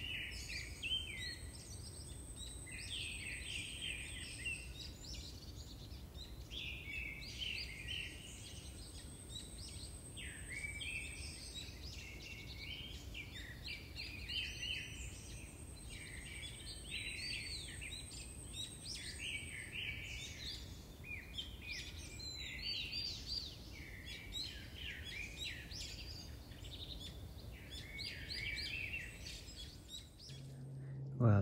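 Wild birds singing in many short, overlapping chirping phrases over a low background rumble. Three times, a thin, very high steady tone sounds for about four seconds.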